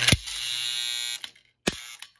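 Electric coil of a toy-train operating coal dump car buzzing steadily for about a second as the red bin tips and dumps its coal into the tray, with a sharp click as it starts and a sharp knock near the end.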